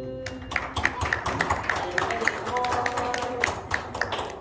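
A small group of people clapping unevenly just as the last held note of a sung song ends, with a few voices in among the claps.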